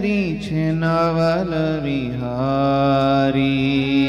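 A man's voice singing a devotional kirtan line, gliding between notes and holding a long note in the middle, over a steady harmonium accompaniment.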